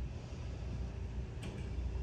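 Steady low outdoor background rumble, with a faint tap about one and a half seconds in.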